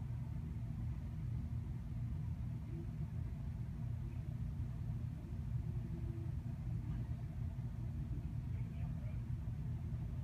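A steady low rumble, with faint muffled voices in the background.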